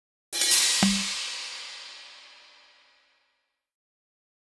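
A cymbal crash from the game's sound effects, with a low drum hit about half a second after it, ringing away over about three seconds. It is the game's stinger as the round ends without a win.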